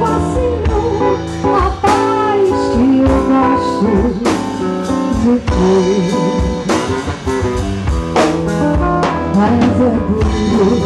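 A woman singing into a microphone over acoustic guitar and drum kit, amplified live through PA speakers, with a steady beat of drum hits.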